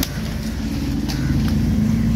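A motor engine running steadily with a low rumble, with a few light knocks of a knife against the wooden chopping block.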